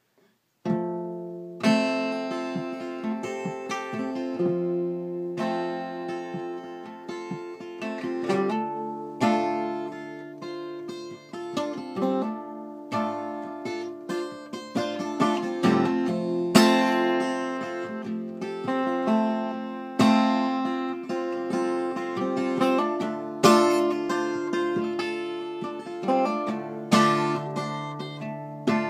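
Acoustic guitar intro: chords struck every second or two and left ringing, with notes picked between them, starting about a second in.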